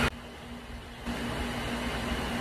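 Steady background hum and hiss of room noise, with no guitar playing. It dips to almost nothing for the first second, then comes back at a low steady level.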